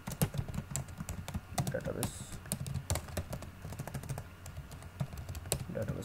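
Typing on a computer keyboard: an irregular run of key clicks, some strikes sharper than others.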